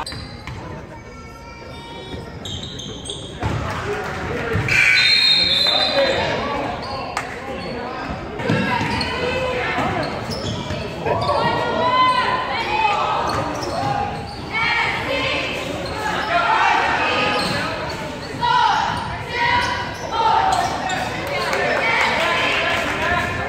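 Basketball bouncing and thudding on a hardwood gym floor during play, with shouts and chatter from players and spectators echoing in the gym, louder from about four seconds in.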